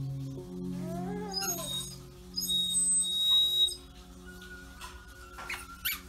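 Background music with steady held low notes, with a short rising-and-falling voice sound about a second in and a burst of high-pitched tones around the middle, the loudest moment.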